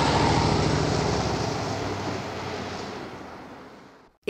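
Car engine pulling away and fading steadily into the distance.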